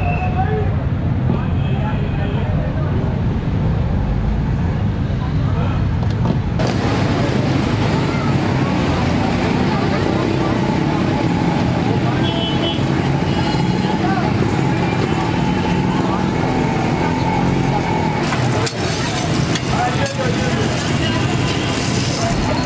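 Busy street ambience: road traffic running steadily, with background voices talking.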